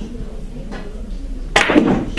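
Russian pyramid billiard balls colliding with a sharp clack as a shot is played, followed by a brief clatter of the balls, about a second and a half in.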